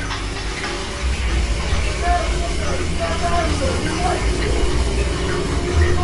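Haunted-house maze ambience: a steady low rumble with indistinct voices over it.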